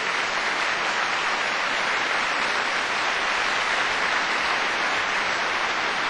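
Large audience applauding steadily, a dense, even clapping that holds at full strength.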